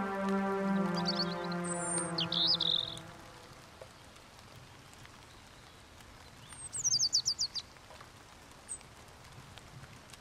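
The last held chord of the beat fades out over the first three seconds, while birds begin chirping. Then come a quick run of about eight falling whistled bird notes about seven seconds in and one short chirp near the end.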